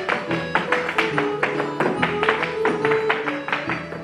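Irish dance hard shoes rapidly tapping and stamping on a wooden studio floor, several sharp strikes a second, in time with a traditional Irish set-dance tune playing underneath.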